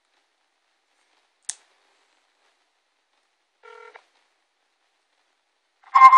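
Phone call on an iPhone 3GS speakerphone connecting to a carrier's automated line: mostly quiet, with one sharp click about a second and a half in, a short electronic beep near the middle, and a loud tone starting at the very end as the line answers.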